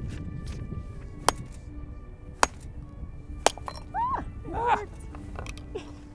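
Hammer striking a steel chisel held on a geode, three sharp metallic clinks about a second apart as the geode is split open, followed by brief voiced exclamations. Soft background music underneath.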